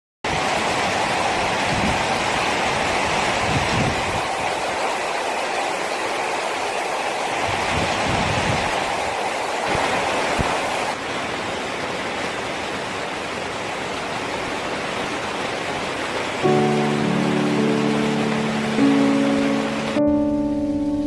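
Heavy rain pouring onto tree foliage, a steady dense hiss. From about three-quarters of the way in, piano music comes in over the rain and is louder than it.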